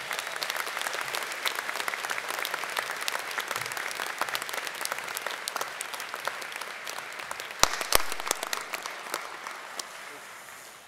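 Audience applauding: many hands clapping steadily, dying away near the end. Two sharper, louder claps stand out about eight seconds in.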